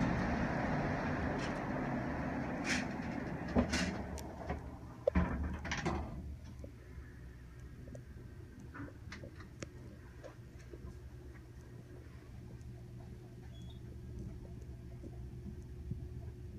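Hydraulic elevator doors sliding shut with several clicks and knocks over the first few seconds, then the 1967 Montgomery hydraulic elevator's pump motor humming steadily as the car rises.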